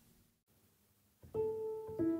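Near silence, then about a second and a quarter in a piano starts a new piece with a single held note, joined by a second note near the end.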